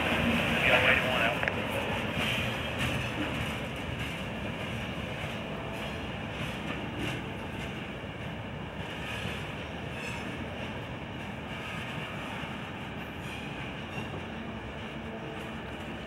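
Freight train of gondola and hopper cars rolling away on the rails, a steady wheel rumble with scattered clicks from the wheels. It is loudest in the first couple of seconds, then settles to a lower, steady rumble as the last cars recede.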